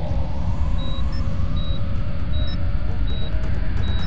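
Electronic soundtrack: a steady low drone with a short high beep repeating about every three-quarters of a second, starting about a second in.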